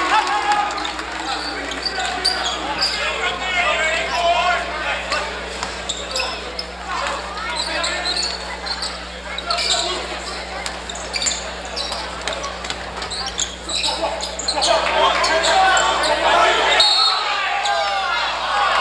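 Basketball bouncing and players' feet on a hardwood gym floor during live play, over spectators talking and calling out in the gym.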